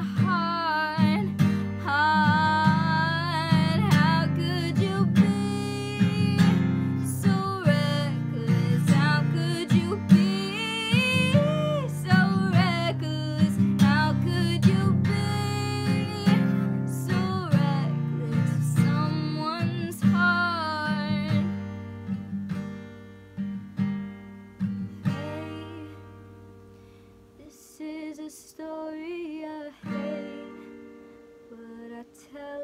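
A young woman singing a pop ballad while strumming chords on an acoustic guitar. The singing stops about two-thirds of the way through. The strumming then fades out, leaving a few last plucked notes near the end.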